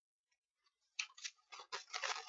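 Computer keyboard keystrokes: a few sharp key clicks in two short clusters, starting about halfway in after a near-silent first half.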